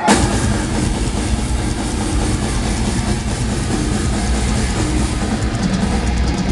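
Live metal band playing at full volume: a dense, distorted wall of electric guitars, bass and drums that comes in abruptly at the start, its heavy low end overloading the recording.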